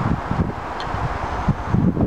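Wind buffeting the microphone as a low rumble, with a few irregular soft low knocks.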